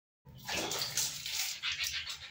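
Water splashing and sloshing in a plastic basin as a hand scoops and washes in it, starting suddenly a moment in and going on in uneven splashes.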